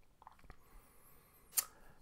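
Quiet room tone, with a faint tick about half a second in and a single sharp click near the end.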